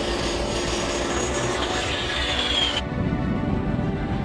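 Background music over a jet taking off: the A-10 Thunderbolt II's twin turbofan engines give a high whine that slowly falls in pitch, then breaks off about three seconds in.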